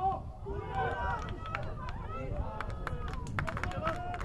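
Footballers calling and shouting to each other on the pitch over a steady low rumble, with a run of sharp clicks or knocks in the last second and a half.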